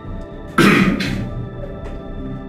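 A man coughs once, loud and short, about half a second in, over steady background music.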